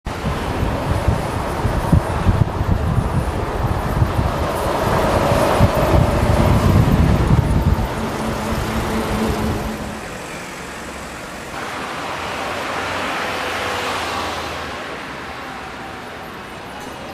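Diesel city bus and street traffic passing by: a loud low rumble for the first half, easing off about ten seconds in, then a swell of traffic noise that rises and fades.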